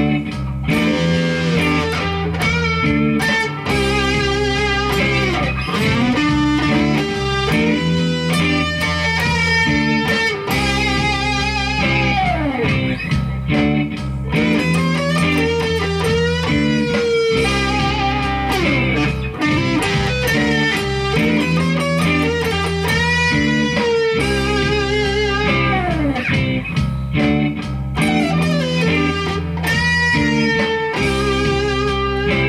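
Electric guitar playing a blues-flavoured lead solo through an amp, single-note lines with string bends and wide vibrato on held notes, over a steady low backing line that changes every few seconds.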